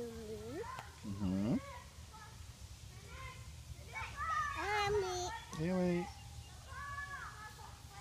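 A young child's high-pitched voice in short vocal bursts and exclamations without clear words: one at the start, one about a second in, a longer run from about four to six seconds in, and a brief one near the end.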